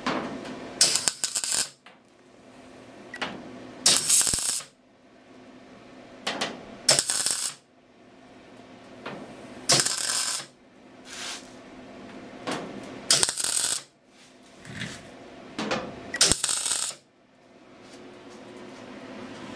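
MIG welder laying a series of short tack welds, six bursts of crackling arc each under a second, about three seconds apart. The welder is running well now that its corroded ground cable has been cleaned.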